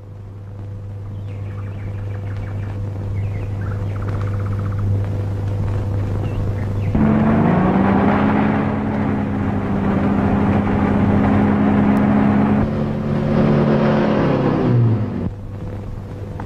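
Jeep engine running, growing louder as it approaches. About seven seconds in it revs up to a steady drone, then winds down near the end.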